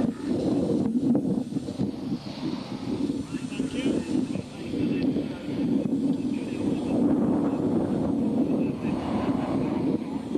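BriSCA Formula 1 stock cars racing, their V8 engines running together as a continuous rough din that rises and falls as the pack circulates.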